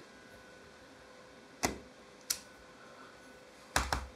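Wooden-handled rubber stamp being pressed down onto a passport page on a table, giving a few short, light taps: two about a second and a half to two seconds in, and a quick pair near the end, with quiet room tone between.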